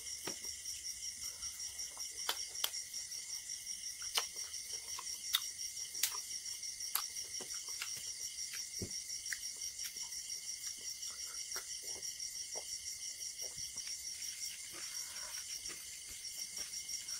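Crickets chirping in a steady, even, high-pitched pulse of about four or five chirps a second, with scattered soft clicks and squelches of a hand mixing rice and curry on a plate.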